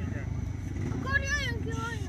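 Single-cylinder speedway motorcycle running as it laps the dirt track, a steady low rumble at a distance, with spectators' voices over it.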